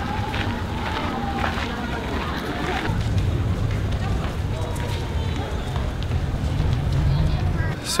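Outdoor ambience: a low rumble of wind on the microphone, stronger in the second half, with faint voices of people around.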